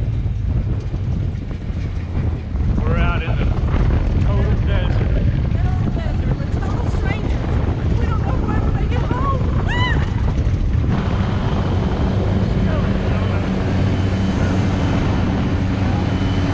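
Side-by-side utility vehicle's engine running as it drives along a dirt track, with wind buffeting the microphone. A few short shouted voices come in the middle, and the engine drone turns steadier near the end.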